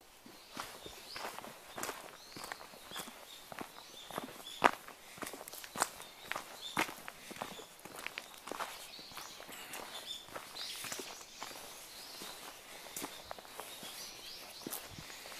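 Footsteps on a dirt path covered in dry fallen leaves, an uneven series of crunching steps, one much louder than the rest about four and a half seconds in.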